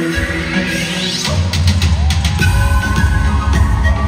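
Live band music: a sweep rises in pitch through the first second, then heavy bass and drums come in, about a second and a half in, and carry on with the band playing.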